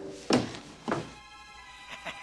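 Two dull thuds about half a second apart, then soft film-score music coming in with sustained tones and light, plucked notes.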